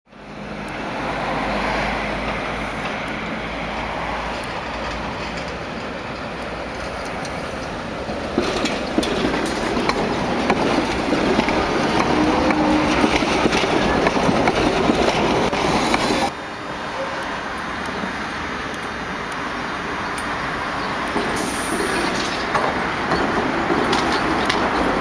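ČKD Tatra trams running on the tracks: a steady rolling rumble that grows louder with sharp clicks about eight seconds in, then drops suddenly about sixteen seconds in.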